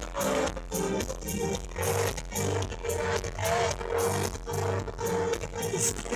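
A live pop-rock band playing a song in concert, with electric guitar and keyboards over low bass notes and a steady beat.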